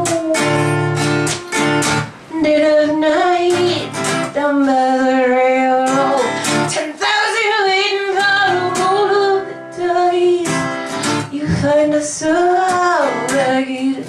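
A woman singing with acoustic guitar accompaniment, holding several long notes.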